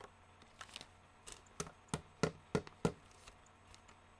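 A run of about ten sharp taps, the loudest five coming evenly, about three a second, in the middle.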